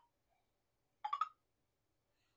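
Keypad beeps from a WEELIAO i60 fingerprint time clock as its buttons are pressed: the tail of a short beep at the very start, then a quick pair of beeps about a second in.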